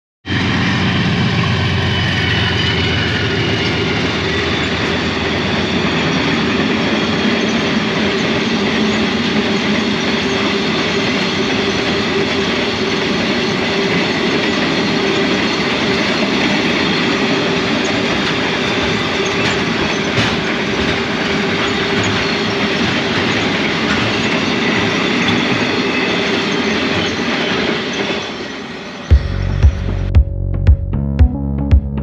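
Narrow-gauge cattle train passing close by, its livestock wagons rolling over the rails in a steady, loud rumble and rattle. Music comes in just before the end.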